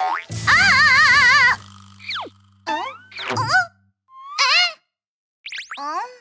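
Cartoon sound effects: a loud wobbling boing lasting about a second, then a string of short, squeaky sliding blips and a quick upward swoop near the end.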